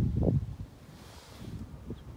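Wind buffeting the phone's microphone in uneven low gusts for about the first half-second. After that it settles to quiet outdoor air.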